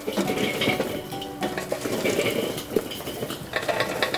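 Glowing charcoal briquettes poured from a metal chimney starter, tumbling and clattering in many quick knocks onto the steel charcoal grate and bowl of a Weber kettle barbecue.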